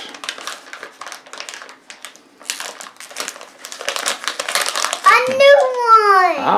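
Foil blind bag being torn open and crinkled by hand: a rapid run of crackles and rustles. A child's voice comes in near the end.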